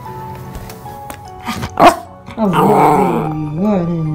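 A small white dog barks once, sharply, a little under two seconds in, then makes a longer wavering vocal sound that runs past the end, over spooky waltz background music.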